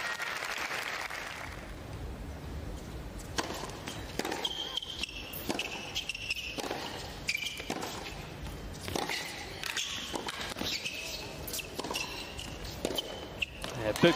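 Applause dying away, then a tennis ball being bounced and struck by racket in a serve and rally on a hard court, a series of short sharp pops with a murmuring crowd between them.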